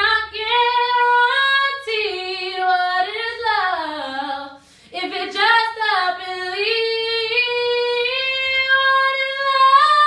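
A woman singing a cappella, her voice sliding up and down through runs, with a short break about halfway, then holding a long note that rises near the end.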